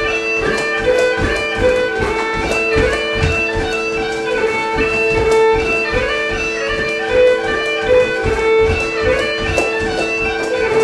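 Bagpipe tune for the Highland fling: steady drones held under a moving chanter melody. Light, regular thuds of soft dance shoes landing on a wooden floor sound beneath it.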